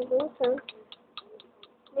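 A voice speaks briefly, then a run of light, irregular clicks follows, roughly five or six a second.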